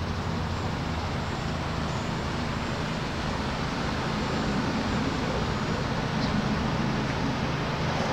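Steady, unbroken hum of distant road traffic, with a low drone underneath.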